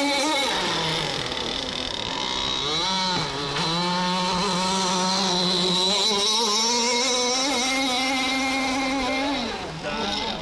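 RCMK two-stroke petrol engine with a home-made cylinder reed valve, driving a radio-controlled racing boat at speed. Its high engine note falls about half a second in, climbs and dips around three seconds, holds lower for a few seconds, then rises again before dropping near the end.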